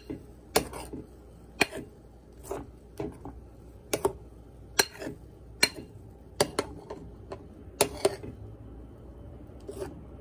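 Metal spoon stirring thick pancake batter in a bowl, clinking sharply against the side of the bowl about once a second.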